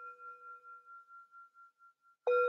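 Metal singing bowl ringing after a strike with its wooden striker, the tone fading away and wavering in level about three times a second.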